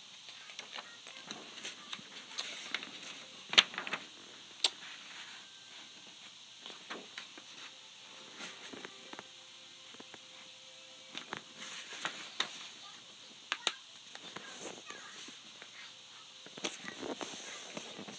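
A sheet of paper being folded and creased close to the microphone: irregular rustles and sharp crackling clicks, with a few louder snaps.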